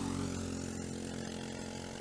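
Briggs & Stratton LO206 single-cylinder four-stroke kart engines running at racing speed, a steady drone that eases slightly over two seconds.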